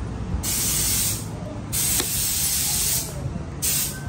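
Three bursts of hissing spray: the first two each about a second long, the last one shorter and near the end, over a low steady hum.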